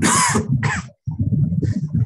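Noise through an unmuted participant's microphone on a video call: a loud harsh burst like a cough, a second shorter one just after, over a low uneven rumble.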